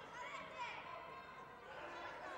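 Indistinct chatter of many overlapping voices in a large sports hall, with no one voice standing out.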